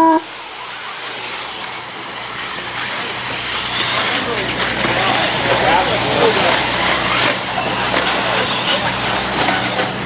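A pack of 1/8-scale electric RC buggies racing away from the start on a dirt track: a dense, building hiss of motors and tyres on dirt, with short rising and falling whines. A steady start tone cuts off right at the outset.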